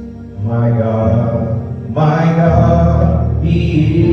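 Gospel vocal group singing slow, long-held notes over a steady low instrumental accompaniment. The voices swell in about half a second in and again, louder, at two seconds.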